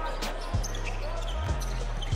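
Basketball being dribbled on a hardwood court, two bounces about a second apart, over the murmur of an arena crowd.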